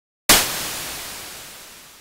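White noise from FL Studio Mobile's GMS synth, its noise oscillator turned fully up, shaped by volume automation into an impact effect. It hits suddenly about a quarter second in and then fades steadily away.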